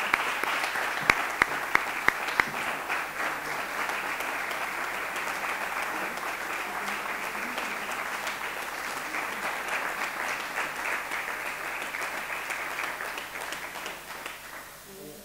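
An audience applauding steadily, with a few sharp, louder single claps close by in the first couple of seconds; the applause tails off near the end.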